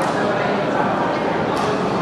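Many voices chattering and calling out at once in a gymnasium: the players' and onlookers' crowd babble, with no single voice standing out.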